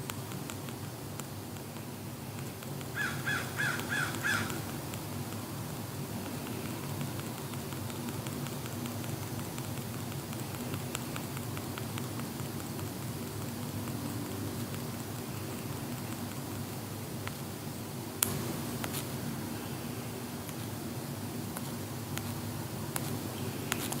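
Steady low background hum of room tone. About three seconds in comes a brief run of five quick high chirps, and later a single click.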